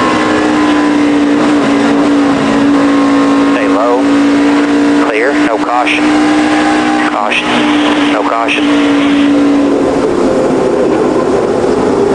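NASCAR stock car's V8 engine running at a steady, unchanging pitch, heard through an onboard camera, fading out near the end.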